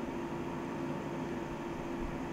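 Room air conditioner running: a steady hiss with a low, even hum.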